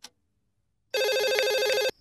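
A telephone ringing: one ring of about a second, starting about a second in and cutting off abruptly. It is the incoming call that the caller is waiting to have picked up. A brief click comes at the very start.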